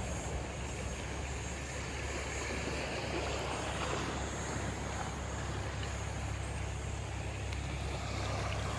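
Shallow seawater lapping and washing over a sandy, rocky shore, with a steady low rumble underneath.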